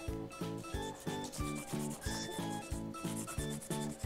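Crayon rubbed back and forth over corrugated cardboard in quick, even strokes, about four a second, shading colour over the board's ridged texture.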